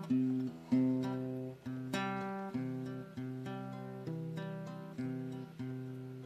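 Solo electro-acoustic guitar playing a song's introduction: chords struck at an even, unhurried pace, each ringing and fading before the next.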